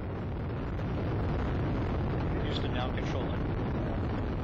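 Space Shuttle Atlantis's two solid rocket boosters and three main engines during ascent: a steady, deep rocket noise with no breaks.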